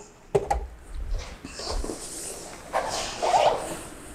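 A dumbbell set down with a sharp knock, then low thumps and rustling as a person gets down onto a floor exercise mat.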